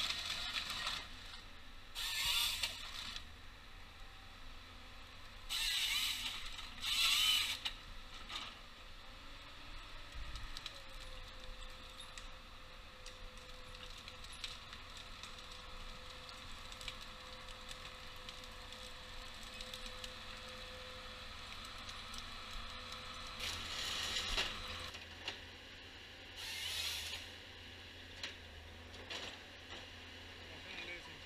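Timberjack 1470D forest harvester working at a distance: the machine running steadily, with about six loud, noisy bursts of about a second each as its harvester head and crane handle stems. A steady whine runs through the middle stretch.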